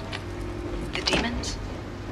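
A film soundtrack with a steady low rumble and a faint held drone, and a short voice fragment about a second in.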